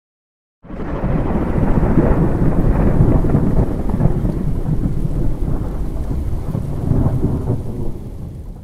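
A long, deep thunder rumble, laid in as a sound effect. It comes in about half a second in and fades away at the end.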